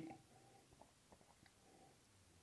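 Near silence: room tone with a few very faint soft ticks.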